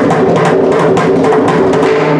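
Mridangam played in a fast, unbroken stream of strokes, the tuned head ringing with a clear pitch under the slaps and taps. The playing is in Khanda Jathi Rupaka Thalam set in Chatusra Nadai.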